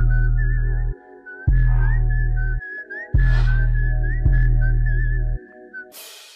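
Background music: a high, wavering whistled melody over deep, drawn-out bass notes, with a few sharp percussion hits. The music cuts off just before the end.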